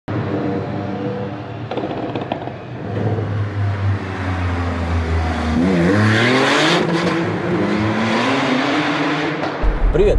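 A car engine runs steadily, then revs up about five and a half seconds in, rising in pitch, with a burst of rushing noise around six seconds. It holds at higher revs until near the end.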